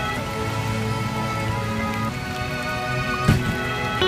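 Rain pattering on wet concrete and dripping into a shallow puddle, under instrumental background music with sustained notes. A single short thump a little over three seconds in is the loudest moment.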